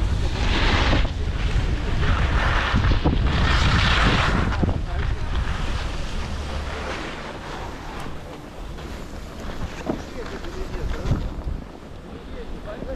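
Wind buffeting the microphone of a skier's body-worn camera during a downhill run, with the hiss of skis sliding and scraping on packed snow. The hiss comes in two louder bursts in the first half, then the sound grows quieter.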